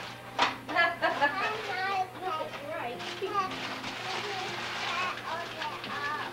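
Indistinct overlapping voices of children and adults talking, with a couple of sharp clicks or rustles in the first second.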